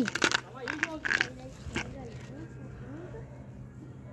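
Faint voices talking in the background, with a few short sharp noises in the first two seconds, over a steady low hum.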